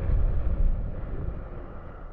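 NASA's sonification of the Kepler star KIC 7671081 B, its brightness oscillations turned into sound: a low, uneven rushing noise that swells in the first second and then eases.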